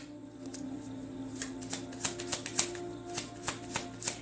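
Tarot deck being shuffled by hand: a run of quick, light card clicks and snaps. Soft background music with a steady held tone runs underneath.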